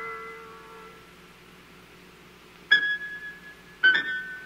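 Solo piano: a chord left ringing after an upward run fades away, and after a pause two more notes or chords are struck about a second apart, each ringing on.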